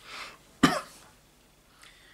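A man coughs once into his fist. A short breath comes first, then one sharp cough less than a second in.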